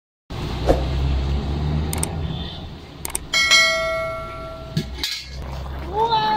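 Subscribe-button animation sound effects: a few sharp mouse clicks, then a notification-bell ding about three and a half seconds in that rings for over a second. A low steady hum runs underneath.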